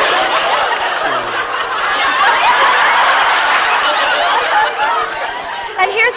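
A studio audience laughing at length, a steady crowd laugh that eases a little near the end, heard on an old, narrow-sounding broadcast recording transferred from cassette.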